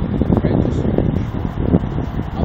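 Wind buffeting and fingers rubbing on a phone's microphone, giving an uneven rumble with faint, muffled voices in it.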